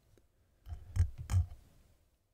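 A stylus tapping on an iPad's glass screen: three quick taps around the middle, the last two louder.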